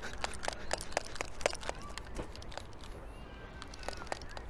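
Irregular clicks and knocks from a handheld phone-on-tripod rig being shaken hard, several a second at first and thinning out later.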